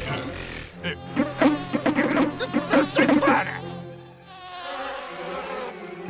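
Cartoon sound effect of a mosquito buzzing, a wavering whine that is loudest over the first few seconds and dips away about four seconds in.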